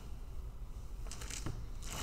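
Faint steady room hum, with a few soft scuffs and rustles about a second and a half in from a person stepping through pivot lunges on an exercise mat.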